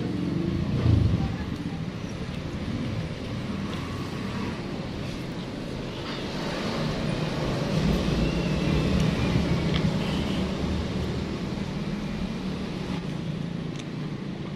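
Road traffic going past, a steady low rumble that swells and fades as a vehicle passes in the middle of the stretch, with a short low thump about a second in.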